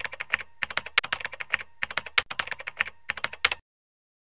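Keyboard-typing sound effect: rapid key clicks in several quick runs with short pauses between them, stopping suddenly near the end.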